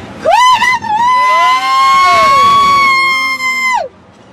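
A woman screaming on a fast fairground thrill ride: one long, loud, high-pitched scream that wavers as it starts, is held steady for about three seconds and cuts off just before the end, with a second, lower voice rising and falling beneath it.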